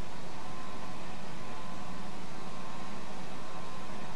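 Steady hissing background noise with a faint hum that cuts in suddenly at the start: the cassette recording resuming before the dance organ begins its next tune.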